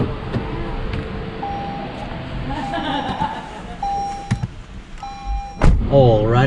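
Mitsubishi ASX's door being opened with a click, then the car's warning chime beeping steadily, four beeps about a second apart. Near the end the door is shut with a loud thud.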